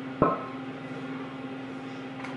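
A single dull knock from a metal bundt pan being handled while its inside is brushed with oil, over a steady low hum.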